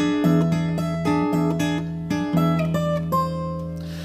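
Takamine steel-string acoustic guitar played fingerstyle: a melody of plucked notes on the high strings over a ringing low E bass, a new note every few tenths of a second. The notes fade away near the end.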